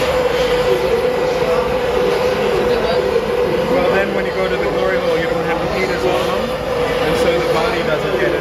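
Gas glassworking torch burning steadily as it heats a glass bulb on a blowpipe: an even rushing sound with one constant tone in it. Voices murmur in the background.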